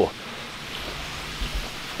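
Steady background noise: an even hiss with no distinct events.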